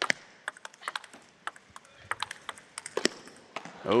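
Table tennis rally: the plastic ball clicking sharply off the rubber-faced bats and the table top in quick, irregular succession, the strokes stopping about three and a half seconds in when the point ends.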